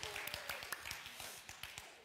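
Scattered hand clapping from a small group in a large hall, thinning out and fading away.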